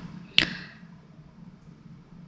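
A single sharp click about half a second in, then quiet room tone.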